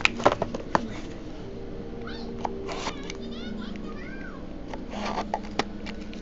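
Hard plastic card holders clicking and clacking against each other as they are handled and stacked, most busily in the first second and again near the end. Between about two and four and a half seconds there are several short, faint, high squeaky calls that rise and fall.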